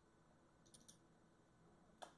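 Near silence with a quick cluster of faint computer-mouse clicks a little under a second in, as in a double-click opening a folder.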